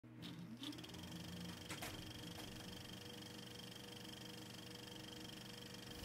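Faint steady hum of several held tones, with a few soft clicks in the first two and a half seconds.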